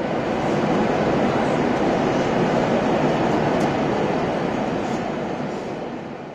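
Steady rushing drone of an airliner's cabin noise, the engines and airflow heard from a passenger seat, growing slightly at the start and fading away near the end.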